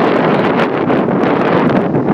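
Wind blowing across the microphone, a loud continuous rush.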